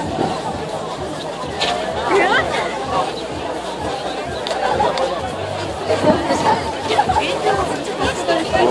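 Crowd chatter: many people talking and calling out at once around the microphone, with a fainter hubbub of voices behind.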